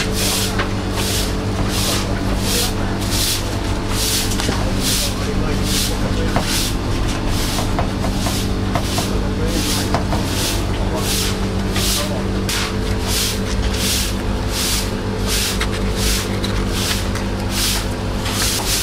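A hissing pulse repeats evenly about twice a second over a steady low hum, with a few faint ticks from a knife cutting a pineapple on a wooden chopping block.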